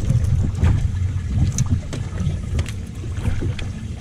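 Wind buffeting the microphone in a low, uneven rumble over the water noise around a small fishing boat.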